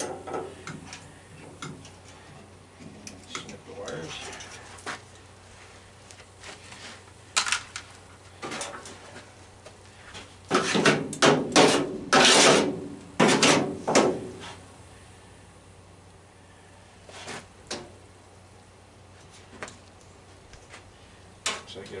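Sheet-metal furnace cabinet and parts clanking and rattling as they are worked on by hand, with scattered clicks and knocks and a loud run of clattering about halfway through.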